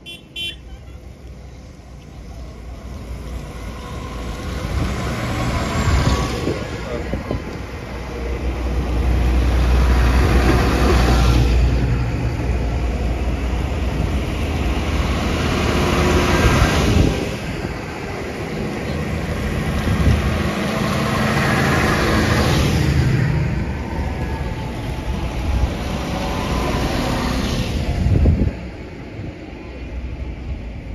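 A line of large diesel tractors driving past one after another, the engines building up as each comes close and a surge of tyre noise on the wet road as each goes by, about five in all. The sound drops away suddenly near the end as the last one has passed.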